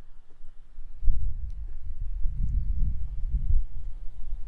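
Wind buffeting the microphone: a low, uneven rumble that starts about a second in and comes and goes.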